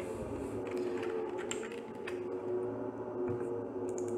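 A steady low hum with several pitches, with a few faint clicks scattered over it.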